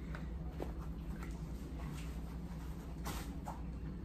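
Steady low room hum with a few faint taps and a soft rustle from hands handling a gauze bandage at an air rifle's barrel.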